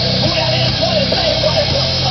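Heavy rock music with a singing voice, playing over the steady engine and road noise of a Cadillac Escalade driving on snow.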